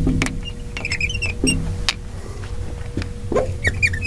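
Marker squeaking on a glass lightboard while words are written: short, high squeaks and little taps in quick irregular runs, over a steady low hum.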